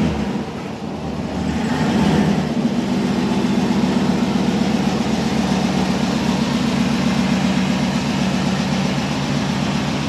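Chevrolet Corvette C6's V8 engine running near idle as the car creeps past at low speed, a steady low engine note that dips briefly about half a second in and builds back by about two seconds.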